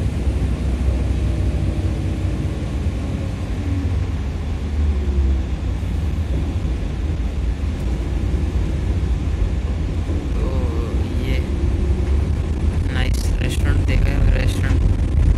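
Shuttle bus interior while moving: a steady low engine and road rumble, with faint voices in the background and a few sharp clicks near the end.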